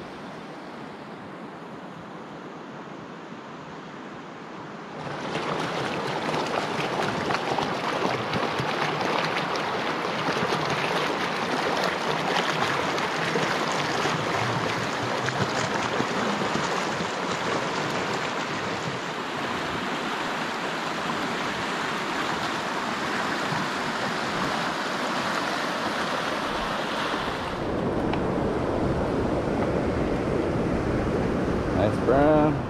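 Fast river water, running high with runoff, rushing over rocks in a steady, even rush. The rush comes in suddenly and much louder about five seconds in, after a quieter stretch of faint ambience. Near the end it gives way to a lower, heavier noise.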